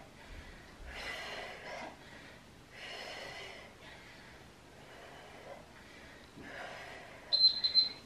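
A woman breathing out hard with each kettlebell swing, four forceful exhales about one every 1.5 to 2 seconds. A short, steady high-pitched beep sounds near the end.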